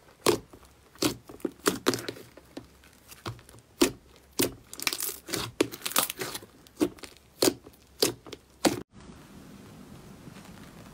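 Fluffy white slime being squeezed and kneaded by hands in a plastic tub, giving an irregular run of sharp, sticky crackles and pops. About nine seconds in the sound cuts off, and a faint steady hiss follows.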